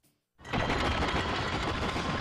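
Dense, rattling, rumbling sound effects of a TV sports broadcast's animated opening, starting suddenly about half a second in after a moment of silence and holding steady and loud.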